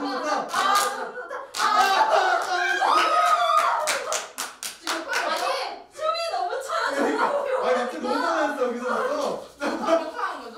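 A group of people clapping their hands in a fast clapping-game rhythm, the claps thickest in the first half, over excited voices and some laughter.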